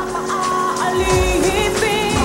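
A song: a singer's voice, its pitch wavering, over held instrumental tones.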